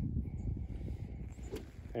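A 7-iron practice swing brushing the turf, with one short, sharp contact about one and a half seconds in, over a steady low rumble.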